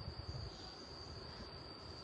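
Faint room tone: a steady high-pitched whine over low background hiss.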